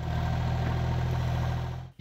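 Mitsubishi mini excavator's diesel engine running steadily at a constant speed, cutting off suddenly just before the end.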